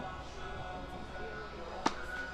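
A single sharp pop of a beach tennis paddle striking the ball, near the end, over faint background music.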